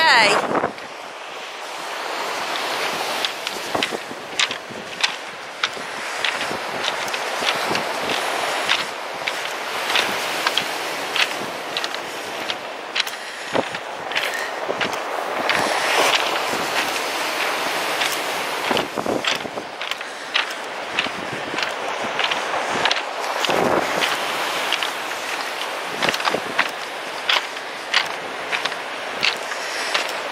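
Footsteps crunching on a shingle beach of large pebbles, sharp irregular clicks about once a second, over a steady rush of breaking surf and wind on the microphone.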